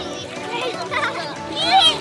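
Young girls' high voices calling out and squealing as they play together in the water, loudest near the end.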